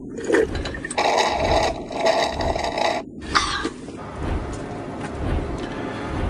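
Car tyres churning loose sand and gravel in a loud, rough rush for about three seconds. The rush cuts off abruptly, then comes back as a steadier, quieter rushing.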